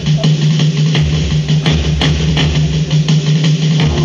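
Live folk ensemble music: a steady low drone held under scattered drum hits.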